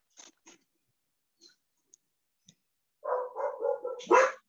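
A dog barking several times in quick succession near the end, coming through a participant's open microphone on a video call. A few faint clicks come before it.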